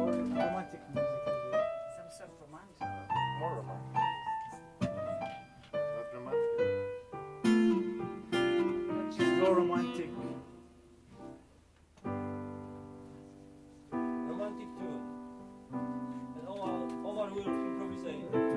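Digital piano and acoustic guitar playing together: struck piano notes and chords, with a held chord about twelve seconds in that fades away over a couple of seconds before the playing picks up again.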